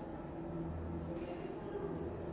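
A low, steady droning hum that swells and fades in slow pulses, with no voice.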